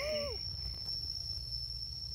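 A steady, high-pitched insect drone, one unbroken tone. Right at the start a brief falling human vocal sound cuts across it, over a low rumble of wind or handling.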